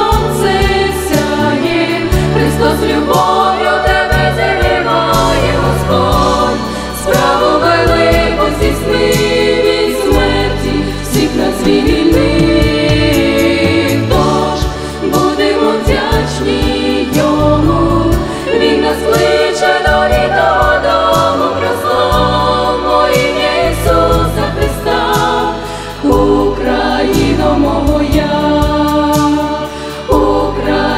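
A female vocal ensemble singing a Christian song in close harmony into microphones, over a low bass accompaniment.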